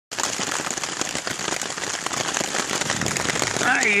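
Heavy rain pattering steadily and densely on a tarp shelter, a thick hiss of close drop ticks. A man's voice starts near the end.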